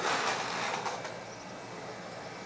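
Skateboard wheels rolling on a concrete bowl: a rushing noise, loudest at the start, that fades over the first second.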